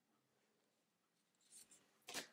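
Near silence, with one faint brief rustle about one and a half seconds in as a tarot card is slid off the front of the deck in hand.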